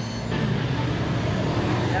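Steady low background hum with faint, indistinct voices.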